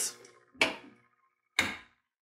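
A clamshell heat press lid being pulled down by its handle and shutting, with two short clunks about a second apart; the second, deeper one is the lid seating shut on the press's electromagnetic closure.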